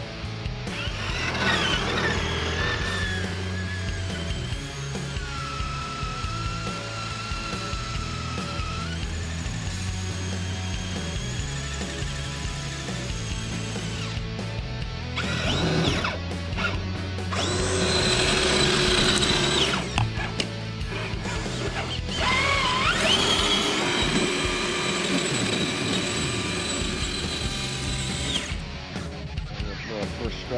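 Electric motor and gear whine of a radio-controlled scale pickup truck, rising in pitch as it speeds up and then holding steady, several times over, with background music running underneath.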